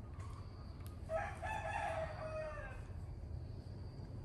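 A rooster crowing once, starting about a second in and lasting under two seconds, its pitch dropping at the end.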